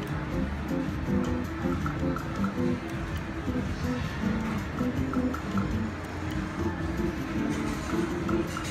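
WMS Gold Fish video slot machine playing its short, repeating electronic jingle notes as its reels spin, one spin after another, over casino background noise.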